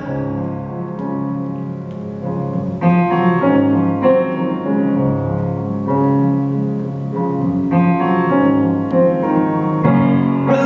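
Solo piano chords played on a stage keyboard, with no voice: sustained, full chords that get louder and busier about three seconds in and again near eight seconds.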